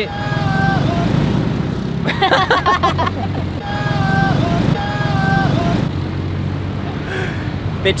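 Steady road traffic on a busy multi-lane city road, cars, a van and a motorcycle going past, with a laugh and a few short held tones about half a second each.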